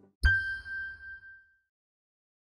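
A single bright electronic chime, the Sony logo sound, struck once about a quarter second in with a soft low thump beneath it, ringing out and fading away over about a second and a half.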